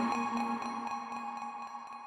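Tail of electronic music fading out: a few held synthesizer tones, one low and one higher, die away slowly with no beat.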